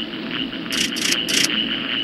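Sound effect for a cartoon spaceship's controls: a steady high electronic tone with a fast pulse over a low hum, broken by three short hissing bursts about a second in.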